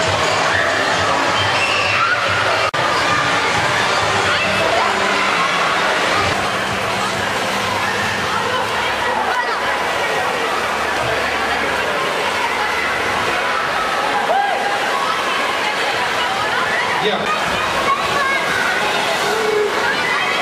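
Churning pool water sloshing and splashing steadily, with many children's voices shouting and calling over it.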